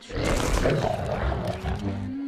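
A large cartoon dinosaur roaring: one long, harsh roar of nearly two seconds with no clear pitch.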